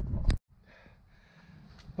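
A short loud noise that cuts off abruptly within the first half second, then faint steady background noise.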